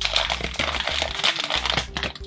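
Foil blind-bag toy packet crinkling and tearing as it is ripped open by hand, a dense rustle that stops just before the end.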